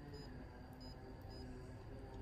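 Short high beeps from a printer's touchscreen as letters are tapped on its on-screen keyboard, about four at uneven intervals, over a faint steady hum.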